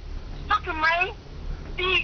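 A woman's voice in a voicemail played through a phone's speaker, wailing in two high, drawn-out cries that bend up and down in pitch, with no words made out.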